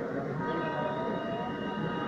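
A train running past on the adjacent track: a steady rumble with several steady high-pitched whining tones over it.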